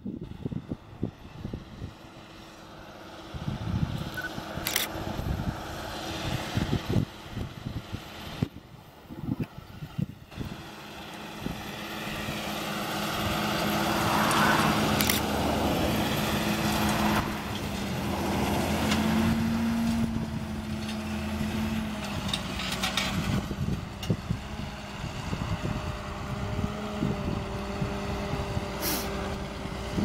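John Deere 7930 tractor's six-cylinder diesel engine pulling hard as it drags a subsoiler through dry ground, with a steady engine note. It grows louder as the tractor comes closest, about halfway through, then eases off as it moves away.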